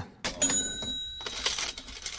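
Livestream subscription alert sound effect: a brief ringing chime over a dense rattling, clinking noise.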